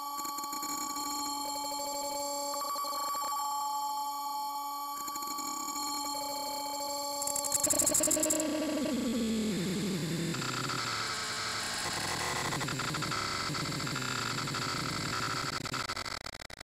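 Distorted, effects-processed electronic logo jingle. Several steady synthesized tones are held for about seven seconds, then a loud, bright burst. After that a pitch slides downward into a noisy, cacophonous jumble.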